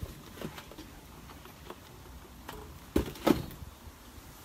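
Things being moved about and set down on a wooden picnic table: a few light clicks, then two loud knocks close together about three seconds in.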